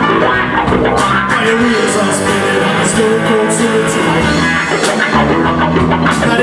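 Live rock band playing: electric guitars and keyboard over drums, with repeated cymbal hits.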